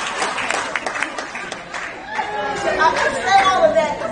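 Audience laughing and chattering after a joke; about halfway through, voices talking take over from the laughter.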